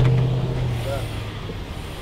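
A car engine's low steady hum, fading away about a second in, over street traffic noise.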